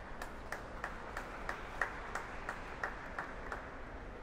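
Hand clapping, distinct claps about three a second over a faint wash of applause, stopping shortly before the end.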